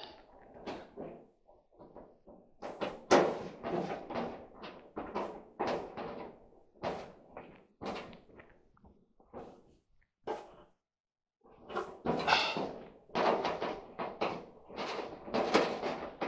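Sheet-metal knocks, clunks and scraping from a White-Westinghouse clothes dryer's cabinet as hands work inside it, shifting its panels. The knocks come irregularly, with a short quiet pause about ten seconds in.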